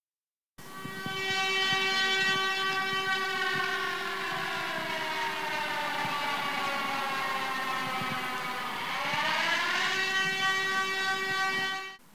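Air-raid siren sounding the alert to take shelter: a wailing tone that slowly falls in pitch, then rises again about nine seconds in and holds. It starts after a brief silence and cuts off suddenly at the end.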